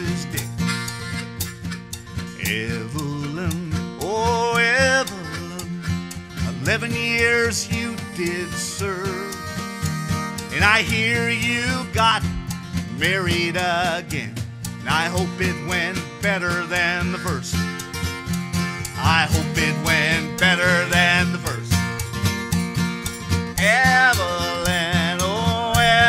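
Live acoustic country-folk music: harmonica playing wavering, bending melody lines over strummed acoustic guitar and light drums.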